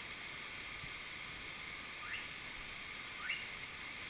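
Steady rush of a mountain stream. Two short rising chirps come about a second apart in the second half.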